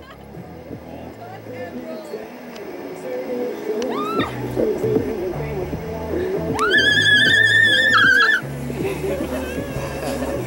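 A woman's long, high-pitched squeal, held for nearly two seconds with a wavering pitch about two-thirds of the way in, after a shorter rising whoop a few seconds earlier. Background music with a steady bass line plays underneath.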